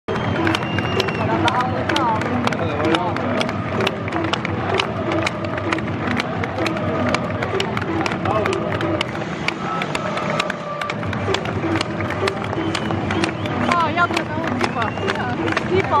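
Football stadium crowd with music over the public-address system, many sharp claps running through it, and voices singing or shouting.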